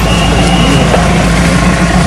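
Loud, steady low rumble of an engine running close by.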